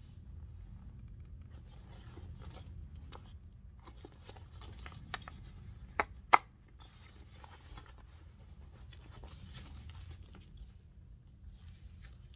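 Leather handbag being handled, with faint rustling and three sharp clicks about halfway through, the last the loudest, from the bag's front flap and metal hardware.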